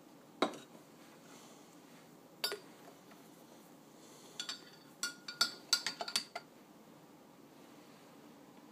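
Metal spoon stirring coffee in a ceramic mug, clinking against the sides: two single clinks a couple of seconds apart, then a quick run of ringing clinks lasting about two seconds.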